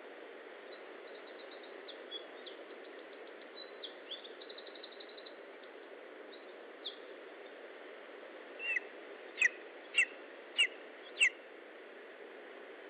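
Bird calls over a steady background hiss: faint, high, rapid trills and single notes in the first half, then four loud, sharp, high calls about 0.6 seconds apart, each dropping in pitch, starting about nine seconds in.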